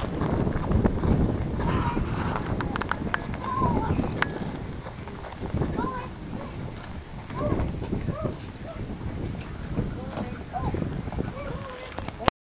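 Hoofbeats of a Gypsy Vanner horse clip-clopping as it pulls a cart, with a low rumble underneath.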